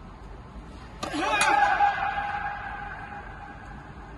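A tennis ball struck hard with a racket about a second in, at once followed by a loud drawn-out shout that rings on in the hall's echo for a couple of seconds as it fades.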